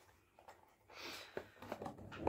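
Near silence, then faint handling noise from a glass water bottle and its case turned over in the hands, with one small click.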